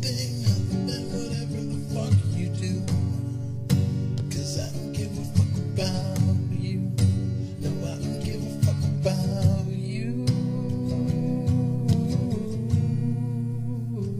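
Acoustic guitar strumming chords in a steady rhythm, an instrumental stretch of a song, with a longer held chord near the end.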